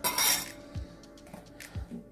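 A steel kitchen knife blade scrapes and clinks against a glass bowl for a moment at the start, knocking chopped green onion into it. After that only background music with a steady low beat.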